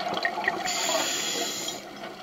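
Underwater sound picked up by a diver's camera: a steady crackling, rushing water noise, with a louder hiss from about two-thirds of a second in that stops near the end, typical of a scuba diver's regulator breath.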